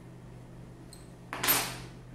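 Fill nipple being unscrewed by hand from a Chinese PCP air-rifle valve. A short, sudden burst of noise comes about a second and a half in as it comes free, and fades within half a second.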